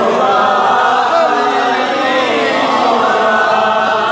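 Devotional naat with layered voices chanting, holding long, wavering notes without instruments.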